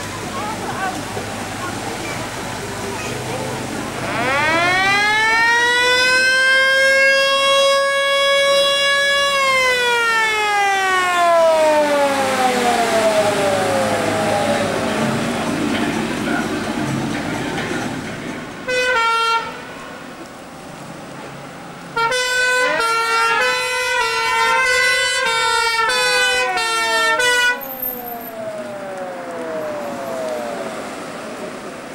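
Fire engine sirens. A wailing siren winds up over about two seconds, holds, then slowly winds down. Later a two-tone siren gives a short blast, then alternates high and low for about five seconds while another wailing siren rises and falls beneath it.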